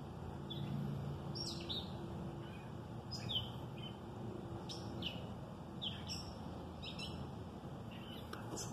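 Small birds chirping outdoors: short, high chirps about once a second, each sliding down in pitch, over a low steady background hum.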